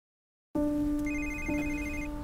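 An electronic telephone ringtone: a rapid, high pulsing trill that starts about a second in, over a steady low hum that begins after half a second of silence.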